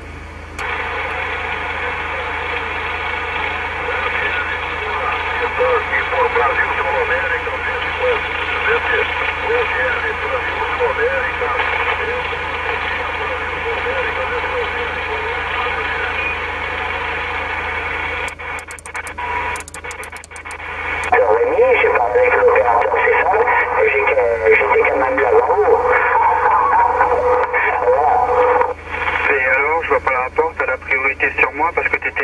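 Receiver audio from a CB transceiver in USB single sideband on the 27 MHz band: garbled voices of distant stations over hiss. It drops out with a few clicks about 18 seconds in, as the channel is changed, and comes back louder a few seconds later.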